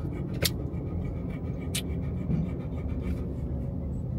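Steady low rumble of a car's road and engine noise heard from inside the cabin while driving, with two short sharp clicks, one about half a second in and one a little before two seconds.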